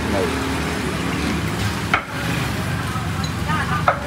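Steady street noise with motorbike engines running, a light clink about halfway through and a sharp knock just before the end, typical of utensils and a knife at a food stall.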